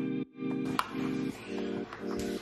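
Background music: a plucked, guitar-like chord pattern that repeats about twice a second in short, evenly spaced blocks. A single short click cuts through it a little before halfway.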